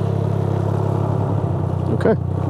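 Can-Am Ryker Rally's three-cylinder engine idling steadily.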